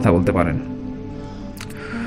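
Background music of sustained, held tones under a man's narrating voice; the voice stops about half a second in and the music carries on alone.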